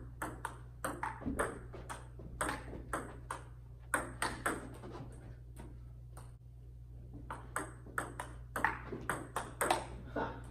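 Table tennis rally: the celluloid ball clicks sharply off the paddles and table about twice a second. There is a short pause in the middle, then another rally starts. A steady low hum runs underneath.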